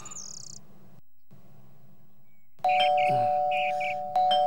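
Electronic doorbell ringing about two and a half seconds in: a steady two-note chime with chirping notes over it, held for over a second.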